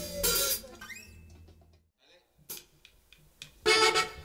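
A norteño band's song ends at the start and its last notes die away, then a short near-silent gap with a few faint clicks, and the band comes back in loudly with accordion and drums near the end.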